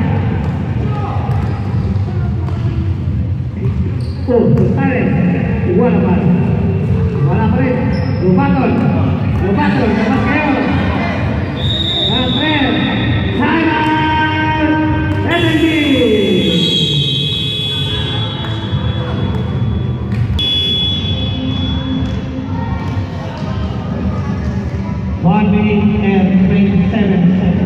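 A basketball being dribbled on an indoor court, its bounces echoing in a large sports hall, under a steady mix of players' voices and shouts.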